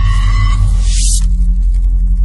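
Logo-intro sound effect: a loud, deep bass drone with a hissing, sparkle-like layer on top that dies away about a second and a quarter in.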